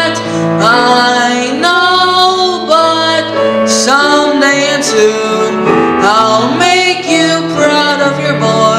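A young male singer singing a slow ballad, accompanied on grand piano.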